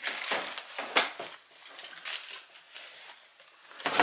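Cardboard packaging being handled, rustling and scraping: a few sharp scuffs in the first second or so, then softer rustling that fades.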